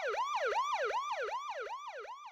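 Siren-like electronic yelp sound effect: a pitch that sweeps down and snaps back up about three times a second.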